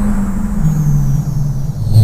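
Electronic remix music with no vocals: a low bass note steps down in pitch about every half second over a dense rumbling low end.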